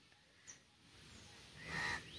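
Quiet outdoor ambience with a brief faint high chirp about half a second in and a soft breath near the end.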